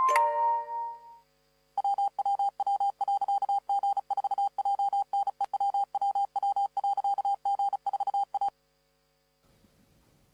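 A few chiming mallet notes die away in the first second. After a short gap, a single high electronic beep is keyed on and off in short and long pulses, like Morse code, for about seven seconds, then stops sharply.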